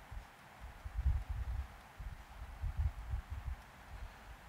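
Faint, irregular low bumps and rustle from a stylus writing on a pen tablet, heard through the lecture microphone over a steady hiss.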